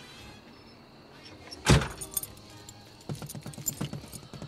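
A car door slams shut about halfway through, one sharp heavy thud. Near the end comes a quick run of light taps.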